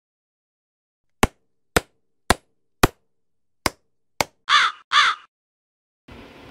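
Six sharp knocks, four evenly spaced about half a second apart, then after a short pause two more, followed by a crow cawing twice.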